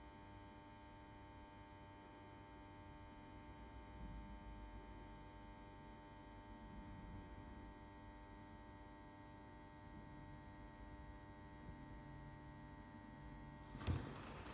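Near silence with a faint, steady electrical hum made of several constant tones.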